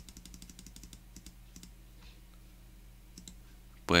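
Computer mouse clicking repeatedly, a quick run of light clicks in the first second or two and then a few scattered ones, as the frequency setting is stepped up, over a faint steady low hum.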